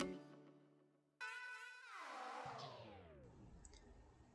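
Background music ending, then near silence, then a faint pitched sound that slides steadily down in pitch over about two seconds, like a pitch-down transition effect.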